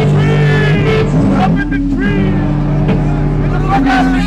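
Loud live hardcore band: distorted guitar and bass holding ringing notes that change a few times, with shouted voices over them.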